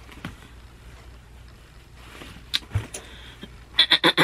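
A few faint clicks and a soft knock from small items being handled, over a low steady hum. A louder throat or voice sound starts just before the end.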